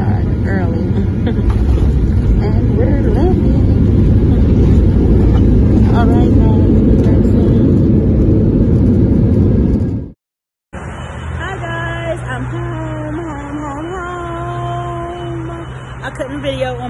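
Airliner cabin noise during the runway roll: loud, steady jet engine and rolling rumble heard from a window seat. It cuts off suddenly about ten seconds in, giving way to a quieter steady hum with a voice drawing out long, sliding tones.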